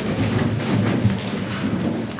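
Metal folding chairs being handled and moved on a stage, with a rumbling, rustling clatter and the general shuffle of people in a hall.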